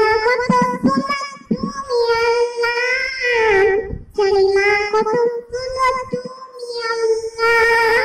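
A young girl singing an Islamic naat unaccompanied, close into a handheld microphone, in long held phrases with brief pauses for breath.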